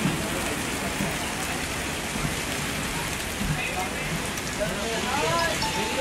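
Heavy rain pouring steadily onto wet tarmac: a dense, even hiss.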